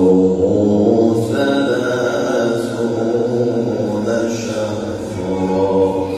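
A male Quran reciter's voice in the embellished tahbir style of recitation, holding one long ornamented note through a microphone. The pitch steps slowly up and down without a break.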